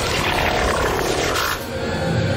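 Science-fiction transition sound effect for entering a virtual-reality interface: a loud rushing whoosh with a falling sweep, easing off about a second and a half in.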